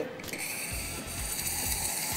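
Espresso machine steam wand starting to hiss about half a second in and slowly building, heating milk in a mug, with the machine's pump rattling low and rhythmically underneath.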